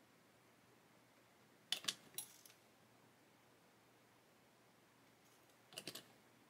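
Near silence broken by two short clusters of sharp clicks and taps from small plastic parts, the louder about two seconds in and a smaller one near the end, as a bottle of liquid plastic cement is handled, capped and set down in its plastic holder.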